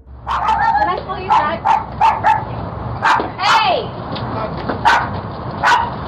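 A guard dog barking repeatedly, about a dozen short barks in quick runs, heard through a doorbell camera's microphone.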